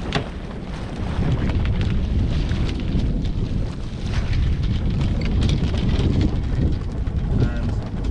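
Wind buffeting the microphone on a sailing yacht's deck, a steady rumble with scattered clicks and rustles over it.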